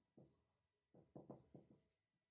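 Faint strokes of a marker writing on a whiteboard: one short stroke just after the start, then a quick run of about five strokes between one and two seconds in.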